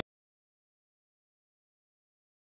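Silence: the recording cuts off abruptly at the start, leaving dead air with no sound at all.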